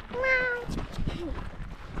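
A child's voice making one high, drawn-out, sing-song vocal note of about half a second near the start, falling slightly in pitch, with a few softer vocal sounds after it.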